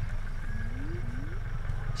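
Low, uneven rumble of wind on the microphone, with two faint short rising tones about half a second and a second in.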